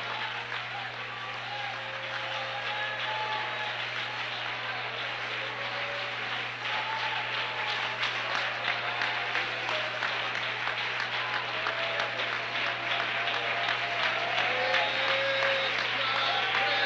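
A church congregation clapping with scattered voices calling out, the applause growing louder toward the end.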